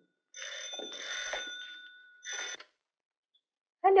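Bell of a black rotary-dial desk telephone ringing: one long ring, then a brief one about two and a half seconds in, after which it stops as the call is answered.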